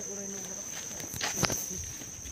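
Footsteps on a concrete footpath, the loudest step about one and a half seconds in, over a steady high-pitched insect drone and faint voices.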